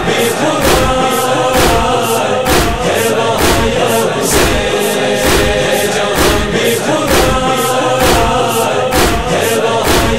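A noha chorus: a group of voices chanting over a steady matam beat of hands striking chests, about three beats every two seconds.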